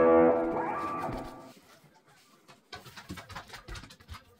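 Background music fading out over the first second and a half. After a short near-silence come faint, irregular crackly rustles, the sound of a paper towel being rubbed over costume fabric.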